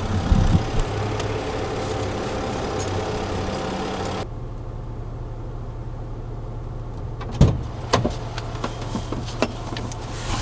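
Steady low engine hum from a parked van, first outside beside it, then muffled inside the cab. About seven and a half seconds in, the van's door opens and someone climbs into the driver's seat, with a couple of sharp knocks and some smaller bumps.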